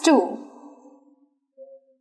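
A woman's voice saying "two", echoing briefly in a small room, then quiet. Near the end there is a short faint squeak of a marker on a whiteboard.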